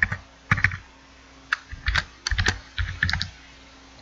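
Computer keyboard being typed on: short, irregular runs of key clicks as a short name is typed into a text field.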